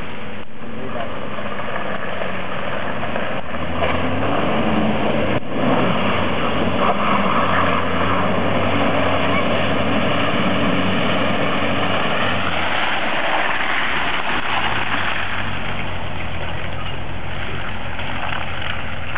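A four-wheel-drive's engine revving hard under load as it drives through a deep mud hole. Its note climbs about four seconds in and eases back after about twelve seconds.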